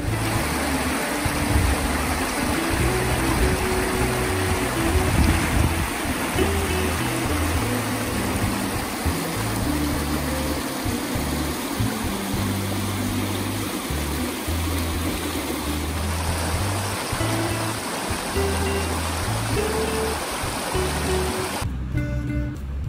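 Shallow river running over a stony bed, a steady rushing that stops abruptly just before the end, with background music's bass notes stepping along underneath.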